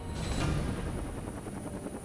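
Low, steady rumbling drone with a faint, thin high whine held above it.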